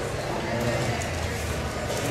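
Room noise in a busy public room: a low steady hum with faint voices in the background.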